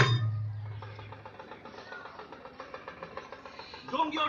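A drum's loud closing stroke ends the music, its low boom ringing and fading over about a second and a half, followed by faint voices.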